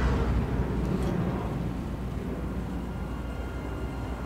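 Film sound effect of a spaceship engine, the Razor Crest gunship: a low rumble with a falling whoosh as the ship passes, fading as it flies off.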